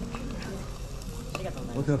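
Fish sizzling on a wire grill over a small tabletop burner flame, a steady hiss.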